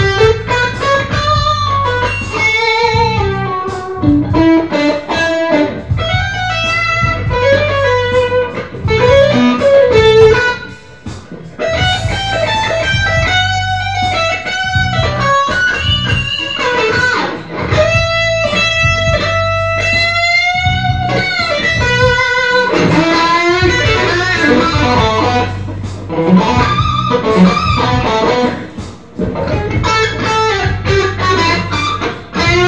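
Electric guitar playing a melodic instrumental lead line, with bent notes and vibrato. About two-thirds of the way in, one long held note wavers and then bends upward.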